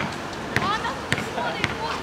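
Basketball dribbled on an asphalt court, bouncing about every half second, with voices talking between the bounces.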